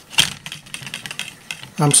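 Plastic toy windmill being set spinning: a sharp plastic click, then a run of light, irregular clicks and ticks from its blades and hub as it turns.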